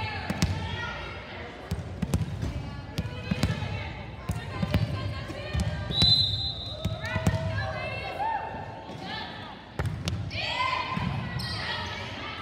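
Volleyball bounced on a hardwood gym floor before a serve, with several voices calling out over it. A referee's whistle blows once, briefly, about halfway through, signalling the serve.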